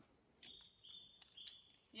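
Near silence with a faint, high-pitched insect trill that starts about half a second in, holding a steady pitch that steps slightly two or three times, and a few faint clicks.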